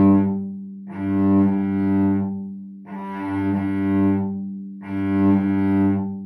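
A cello playing broken slurs: four bowed notes in a row, about a second and a half each. Each note swells, is stopped by the bow, then carries on in the same bow stroke, while the low string rings on through the gaps.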